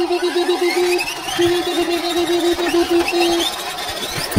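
Toy Double E concrete mixer truck running its drum-turning function. A steady, pulsing electronic tone plays until about three and a half seconds in, with a short break near one second, over a faint whine that rises gradually.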